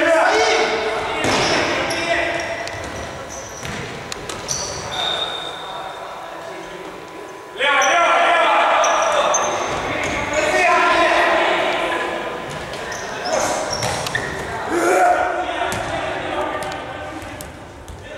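Futsal match in a large, echoing sports hall: players' voices shouting, with a sudden burst of loud shouting about eight seconds in, and the ball thudding off feet and the hard court floor.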